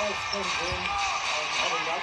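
Basketball being dribbled on a hardwood court, under the steady noise of an arena crowd and its background music.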